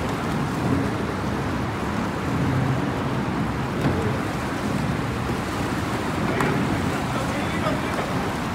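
Steady outdoor background noise, a low rumble and hiss, with faint distant voices.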